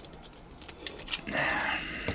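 Hard plastic parts of a Transformers figure clicking and rubbing as they are pushed and wedged by hand: a few small sharp clicks, then a longer soft rustle.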